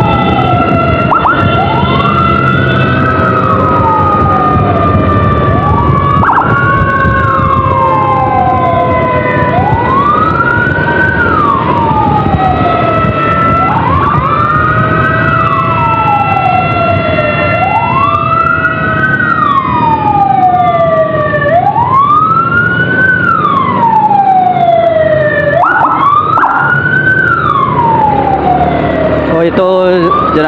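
Electronic emergency siren in a wail pattern, rising quickly and falling slowly about every four seconds, with a second siren tone gliding slowly underneath, over steady motorcycle engine and wind rumble.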